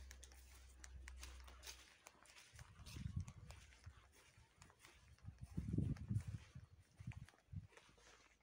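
Footsteps across grass and dry leaves, with irregular low thumps of a handheld phone being jostled, loudest about three and six seconds in, and scattered light crackles.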